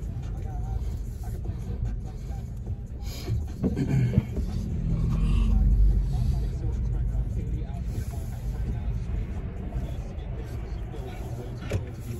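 Steady low road and engine rumble inside a moving car's cabin, swelling a little about five seconds in, with a brief pitched voice-like sound about four seconds in.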